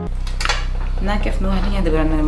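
Steady low electrical hum with a few short clinks of tableware, glasses on a table, about half a second in.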